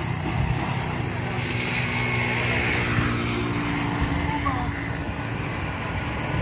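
A motor vehicle engine running steadily, with people talking in the background.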